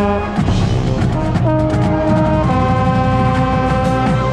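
A marching band's brass section playing loudly, with a trombone right at the microphone and drums underneath. A few moving notes give way to held chords, and the last chord is sustained for about a second and a half.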